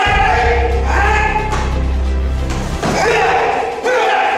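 Background music with sung, choir-like vocals over a deep bass note that drops out about three-quarters of the way through.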